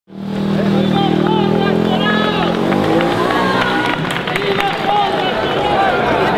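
Crowd of marchers talking among themselves, many overlapping voices in an open street. Under the voices a steady low drone runs for the first couple of seconds and then fades.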